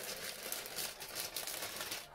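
Clear plastic bags of LEGO bricks crinkling and rustling as they are handled, a steady run of small crackles.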